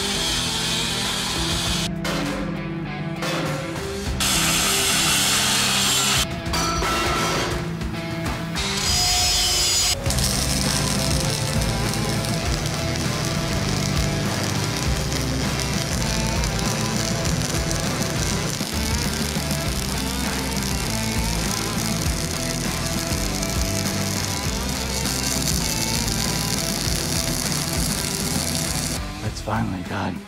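Background music, with short stretches of a Makita electric angle grinder on steel mixed in during the first ten seconds, cut off abruptly between shots.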